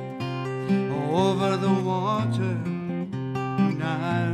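Steel-string acoustic guitar strummed and picked in a steady song accompaniment, with a man's voice singing a long, wavering note over it about a second in.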